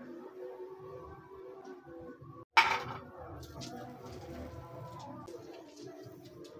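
Stainless-steel ice cream scoop scraping through soft avocado ice cream in a glass bowl, with one sharp clink about halfway through and a few faint clicks after.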